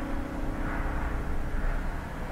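The last strummed chord of an acoustic guitar ringing out and fading away, over a steady low rumble of room noise.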